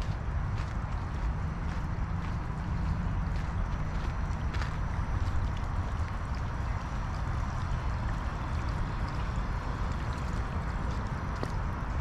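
Steady rushing outdoor noise with a strong, uneven low rumble, and a faint tap now and then.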